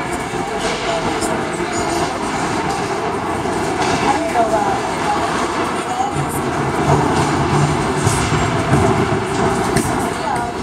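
Steady din of an indoor ice rink during a hockey game: a constant roar of arena noise with spectators' chatter, and a few sharp clicks scattered through it.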